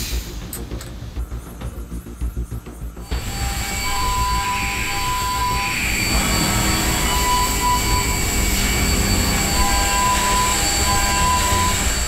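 A CNC milling machine running with music: a few sharp clicks in the first three seconds, then from about three seconds in a steady rushing machine noise with a constant high whine.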